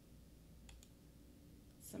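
Near silence with a few faint computer mouse clicks, spaced out, while trading charts are brought up on screen; a woman's voice starts a word at the very end.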